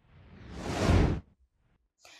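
A whoosh transition sound effect: a rush of noise that swells for about a second and then cuts off suddenly.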